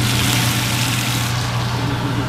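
Food sizzling in a frying pan on a gas stove, a steady hiss over a constant low hum. The hiss is strongest in the first second or so.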